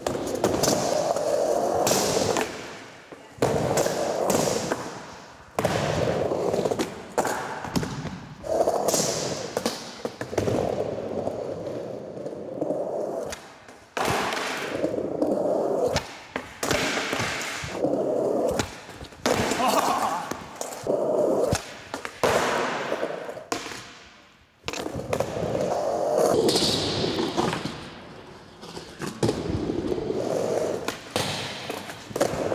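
Skateboard wheels rolling over wooden ramps and concrete, with many sharp pops, landings and knocks through the run. The rolling noise drops away briefly several times between impacts, and once the board gets loose from the rider and clatters away.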